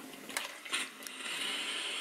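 Iron pressing a tailored seam on a sleeve board: a few soft rustles of cloth, then a steady hiss from about a second in.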